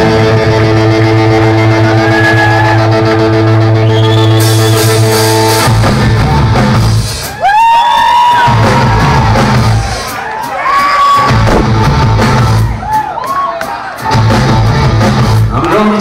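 Live rock band playing loud through a PA: a held, ringing electric guitar chord for the first six seconds, then the guitars and drums come in together on a stop-start riff with bent notes.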